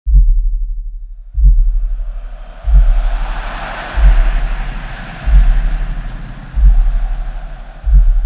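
Intro music for a logo animation: a deep bass boom about every 1.3 seconds, seven in all, each fading away, under an airy swell that builds and then fades.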